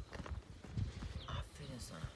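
Belgian shepherd puppy eating dry kibble from a bowl: irregular crunching and chewing, with small clicks of food against the bowl.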